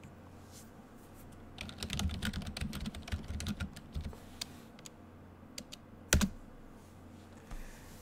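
Typing on a computer keyboard: a quick run of keystrokes begins about one and a half seconds in and lasts about two seconds. A few scattered single clicks follow, one of them louder, about six seconds in.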